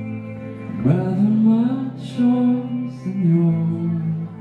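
Live song: a male voice sings slow held notes into a microphone, sliding up into a long note about a second in, over soft electric guitar.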